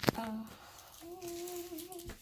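A person's voice: a short "uh", then from about a second in a single steady hummed note held for about a second.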